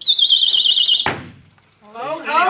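A shrill, high-pitched whistle, wavering and held for about a second, that cuts off at a sharp thud.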